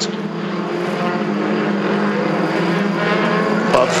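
Several touring-car engines running together in a steady, slightly wavering drone as a bunched queue of cars drives past at reduced pace under red flags.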